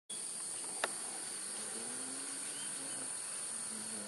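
A steady, high-pitched insect drone, a chorus of forest insects, with one brief click a little under a second in.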